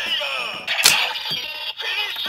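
Electronic sound effects from a DX Kamen Rider weapon toy with the Den-O Climax Form Ride Watch fitted: the weapon link-up announcement, a recorded voice call and music through the toy's small speaker, with a sharp hit effect a little under a second in.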